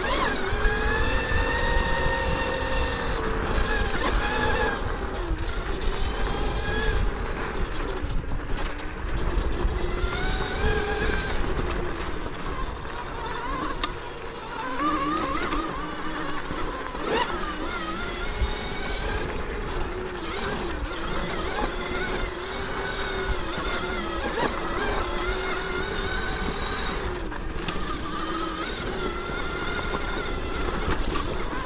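Throne Srpnt 72-volt electric dirt bike's motor whining, its pitch rising and falling with throttle and speed, over a low rumble. The whine eases briefly about halfway through.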